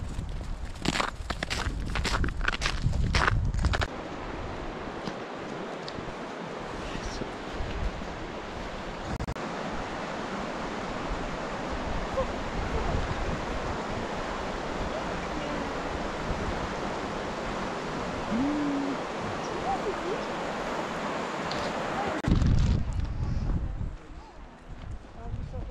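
Mountain stream rushing steadily over its stony bed. The first few seconds hold a handful of knocks over a low rumble, and the rumble returns near the end.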